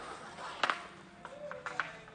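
Lengths of timber moulding knocking against a metal shopping trolley as they are loaded into it: a handful of sharp knocks, the loudest about two-thirds of a second in.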